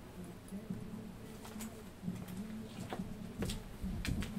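Faint room sounds with a few light clicks, then, near the end, a person moving close and sitting down in a vinyl salon chair with a low knock.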